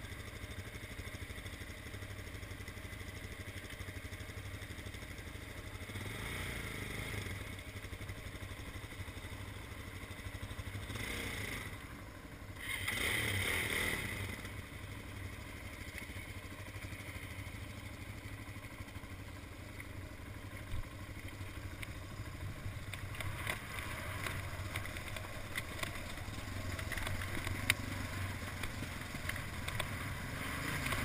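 Dual-sport dirt bike engines running at low revs on a rutted dirt trail, with a few brief louder swells of throttle in the middle. Engine noise rises near the end, with scattered clatter as the bikes ride over rough, rocky ground.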